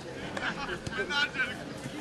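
Distant shouting voices of footballers and spectators around the pitch, with a couple of faint knocks.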